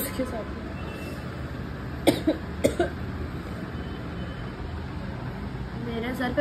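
A person coughing twice in quick succession, about two seconds in, over a steady low background hum.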